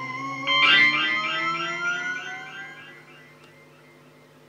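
Electric guitar through effects: sustained notes slowly sliding up in pitch, then a struck note about half a second in that repeats in quick, evenly spaced echoes and fades away over the next couple of seconds.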